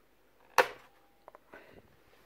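Plastic bottom cover of an ASUS K50I laptop being pushed forward off its latches. It gives one sharp click about half a second in as it comes loose, then a few faint ticks.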